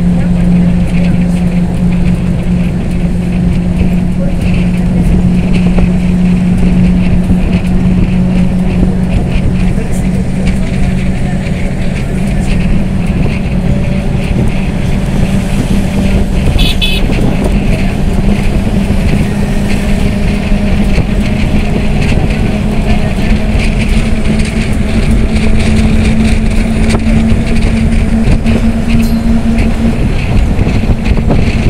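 Engine and road noise heard from inside a moving road vehicle: a steady engine drone over a loud rumble of tyres and wind, its pitch creeping slightly higher in the second half. A brief high-pitched tone sounds about 17 seconds in.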